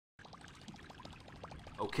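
Water trickling and splashing, with many small drop-like plinks. It starts a moment in, after a brief silence.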